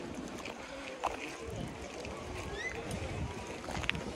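Open-air market crowd ambience: a steady murmur of distant voices and movement, with a soft knock about a second in and another near the end, and a brief high rising chirp midway.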